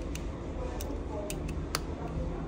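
Four light plastic clicks as flex-cable connectors are pressed home onto a smartphone's mainboard, the last one the sharpest, over a steady low hum.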